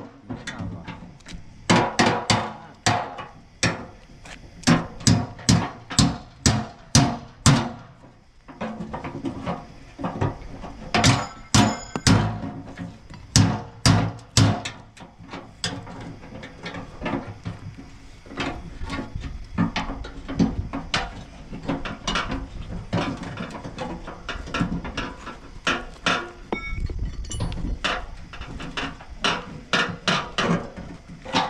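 Hammer striking a steel column formwork tube: sharp metallic clanks in irregular runs of a few blows a second, some leaving a brief ringing tone.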